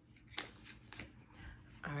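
A deck of tarot cards being shuffled by hand: a few soft, brief shuffling strokes. A woman's voice begins just before the end.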